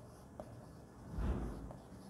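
Marker writing on a whiteboard: faint strokes with a few small ticks, a little louder for a moment just past the middle.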